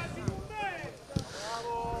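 Faint, distant voices of players shouting and calling out on the pitch, one call held for a moment near the end, with a single short knock about a second in.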